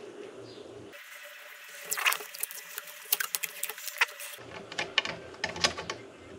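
Light, irregular clicks and taps of metal motorcycle fork parts being handled in gloved hands, growing more frequent toward the end.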